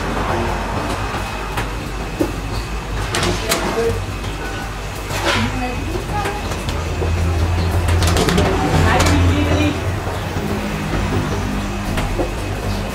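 Metal baking trays being slid onto deck-oven racks, with a few sharp clanks, over a steady low hum that grows louder for a couple of seconds past the middle.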